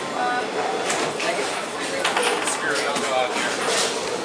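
Busy bowling-alley room sound: indistinct chatter of many voices echoing in a large hall, with several sharp knocks scattered through it.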